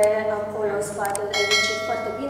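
Two quick mouse clicks, then a bright bell chime that rings on steadily: the sound effect of a YouTube subscribe-button animation. It comes about a second in, over a woman speaking.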